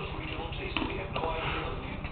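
Faint, indistinct voices over a steady low hum.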